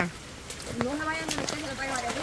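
Raindrops tapping on the microphone in a few sharp, scattered ticks, under faint voices talking.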